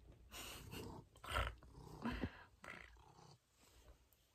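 A domestic cat making several short, low vocal sounds close to the microphone, spread across a few seconds.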